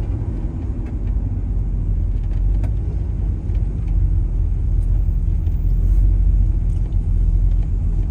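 A 1972 Chevrolet Chevelle's 502 cubic-inch big-block V8 with aftermarket headers running at low speed in traffic, heard from inside the cabin as a steady low rumble that gets a little louder in the second half. It runs clean, with no odd noises.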